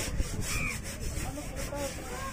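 A large knife scraping over a seer fish and the wooden chopping block beneath it in quick, uneven strokes, about four a second.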